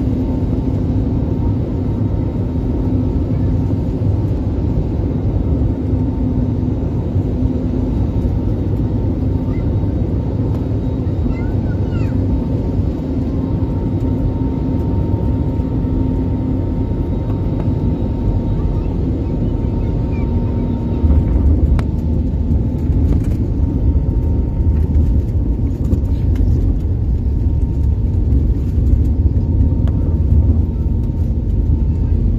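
Airliner cabin noise on landing: a steady drone of jet engines and airflow with a few held tones. About twenty seconds in, a heavier low rumble starts as the wheels meet the runway and the plane rolls out.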